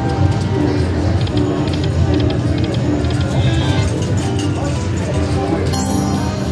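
Buffalo Diamond video slot machine playing its electronic game music, with quick ticking as the reels spin, over casino background noise.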